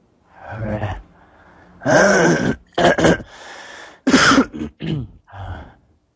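A person's voice making loud wordless cries over a video call: about six short, pitched outbursts in five seconds, the longest and loudest about two seconds in.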